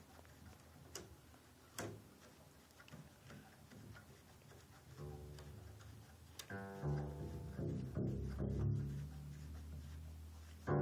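Newly fitted double bass A string, plucked as it is wound up to tension, sounding a series of low notes from about halfway through. Before that come a few sharp clicks from the string and tuning gear.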